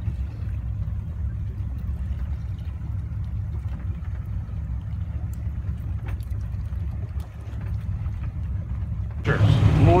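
A boat's engine running steadily while trolling: a constant low hum with water noise over it. A voice comes in near the end.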